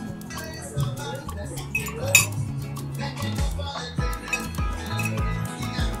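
Forks clinking against plates and dishes, with a sharp clink about two seconds in, over background music with a steady bass line and a low beat in the second half.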